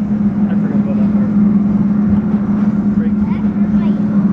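Test Track ride vehicle moving along the track at speed: a steady low hum over an even rumble from the wheels and car.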